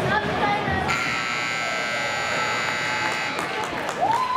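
Rink scoreboard buzzer sounding one steady, harsh tone for about two and a half seconds, starting about a second in and cutting off near the end. It marks the end of the hockey game, with spectators' voices around it.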